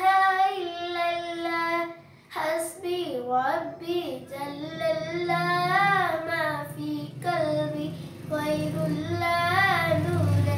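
A young girl singing a naat, a devotional song in praise of the Prophet, unaccompanied. Long held, wavering notes in phrases with short breaths between them, about two and seven seconds in.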